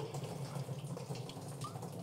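Water pouring from a plastic bottle into the side refill tray of an evaporative air cooler's water tank, a faint, steady trickle as the tank fills.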